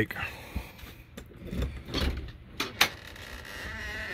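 Footsteps and a few sharp knocks and clicks, then a door opened near the end, with a faint creak.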